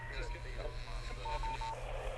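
A single-pitch electronic beep tone pulsing on and off in short dashes, in quick groups about a second in and again near the end, over a steady low hum and faint voices.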